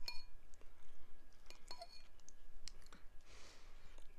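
Metal fork clinking against a ceramic bowl while picking up pasta: a handful of short, ringing clinks spread over the first three seconds. A soft hiss follows near the end.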